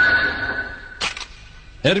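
Cartoon sound effect of swords raised: a sudden metallic ring that holds one high tone and fades over about a second and a half, with a short sharp hit about a second in.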